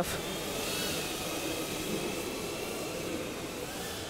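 Small ducted-propeller quadcopter (tiny-whoop FPV drone) in flight: a steady high whine from its motors and propellers over a hiss of rushing air. The whine rises and dips slightly about a second in as the throttle changes.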